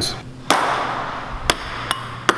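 Plastic ping-pong ball bouncing off hard skatepark surfaces: three sharp clicks spaced about a second and then half a second apart, the first followed by a brief rushing hiss.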